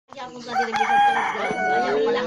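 A rooster crowing: one long call held steady for over a second, over people's voices.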